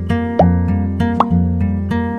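Background music led by a plucked acoustic guitar, notes changing on a steady beat, with a few short upward pitch slides.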